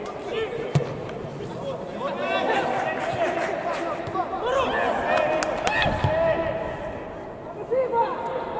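Footballers shouting and calling to each other during play, with a few sharp thuds of the ball being kicked, about a second in and several times around five to six seconds in.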